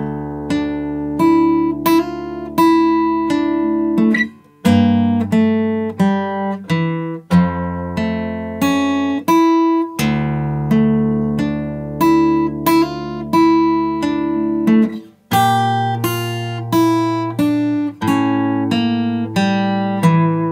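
Acoustic guitar fingerpicked at a slow practice tempo, single notes and two-note pairs ringing into one another, in phrases separated by four short breaks.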